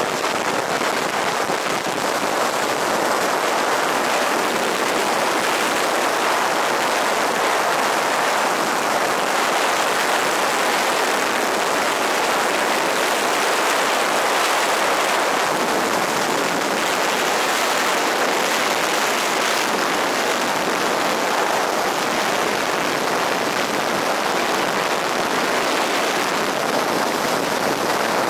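Wind noise from the airflow over a wingsuit pilot's body-mounted camera in full flight: a loud, steady, unbroken rush.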